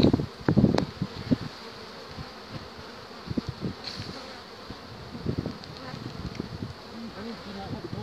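Honeybees buzzing around an opened hive and a frame of brood comb, a steady drone, with a couple of sharp clicks in the first second.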